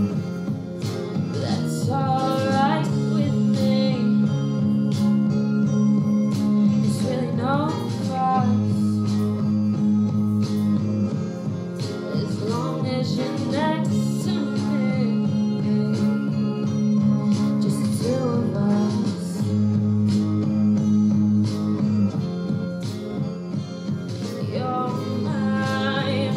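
A woman singing a song into a microphone over an instrumental backing track with a steady beat, amplified through a PA.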